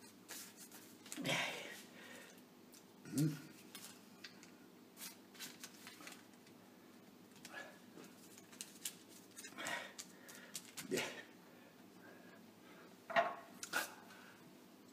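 Scattered light handling sounds on a kitchen counter: hands pressing and smoothing a sheet of puff pastry on baking paper, with soft taps, clicks and rustles, a few of them louder.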